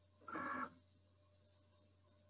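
Cricut Explore cutting machine's mat-feed motor whirring once, briefly (about half a second), as it pulls the cutting mat in to load it.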